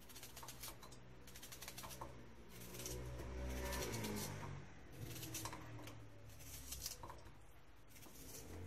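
Chef's knife slicing through a raw onion held in the hand: a series of faint, crisp cuts, with onion pieces dropping into an empty stainless steel pot.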